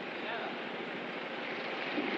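EMD GR-12 diesel-electric locomotive running as it approaches with its passenger train, heard at a distance as a steady engine and rail noise mixed with wind on the microphone.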